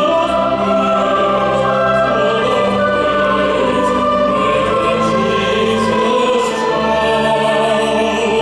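Women's choir singing a Christmas carol in sustained chords, accompanied by an orchestra with harp.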